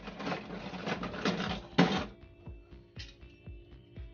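Die-cast toy cars clattering against each other and a plastic jar as a hand rummages through them, with a sharper clatter near the two-second mark. Background music with a steady beat runs underneath.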